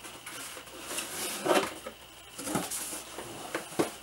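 Plain brown cardboard box being opened by hand, a carded action figure sliding out of it: a few short cardboard scrapes and rustles with light taps, the loudest about a second and a half in.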